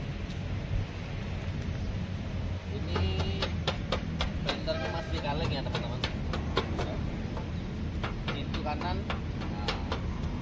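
Knuckle taps on the steel body panels of a Honda Mobilio, a few sharp knocks a second starting about three seconds in, against a steady low outdoor rumble. The panels are being knocked to hear whether they are still bare metal, without body filler from a repair.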